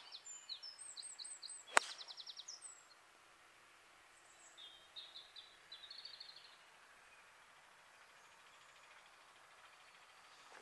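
Small birds singing: runs of quick high chirps in the first few seconds and again about halfway through, over faint outdoor background. A single sharp click a little under two seconds in.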